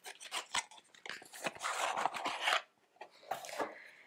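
Tarot cards being slid out of their box and handled: a run of light clicks and papery rubbing, with a longer rustle about a second and a half in and a shorter one near the end.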